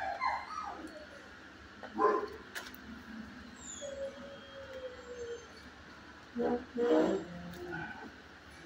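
Dog vocalising: short yips, a long falling whine a little past the middle, and a loud burst of barks near the end.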